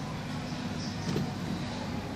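Hand screwdriver turning a wire terminal screw on a magnetic contactor, faint over a steady background hum.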